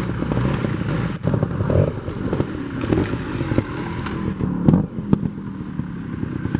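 Trials motorcycle's single-cylinder engine running at low revs with short throttle blips as it climbs over rocks, with a few sharp knocks of the bike on stone.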